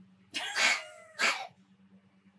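A cat sneezing twice, two short sharp bursts about a second apart. The owners call the cat asthmatic.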